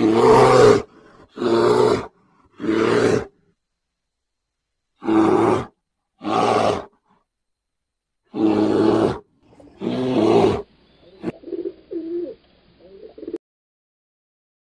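Bear roaring: seven loud, short roars, each under a second, spaced about a second apart with a longer gap in the middle. These are followed by quieter, lower grunts with a single sharp click, and the sound cuts off shortly before the end.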